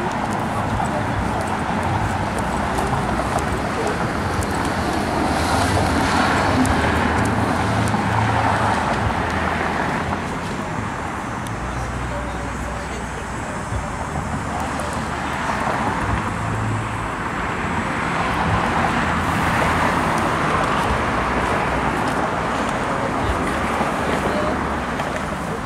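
Outdoor ambience of indistinct background conversation over a steady low hum of vehicle and traffic noise.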